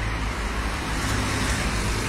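Steady street traffic noise from cars on the road, an even low rumble with no distinct pass-by.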